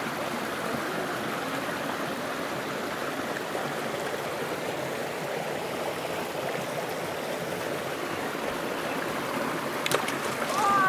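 Stream water running steadily over rocks. A brief splash just before the end.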